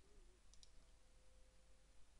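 Near silence, with a couple of faint, quick computer mouse clicks about half a second in.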